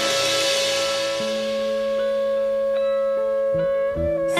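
Instrumental passage of early-1970s French progressive rock: sustained chords held on several instruments, shifting to a new chord every second or so.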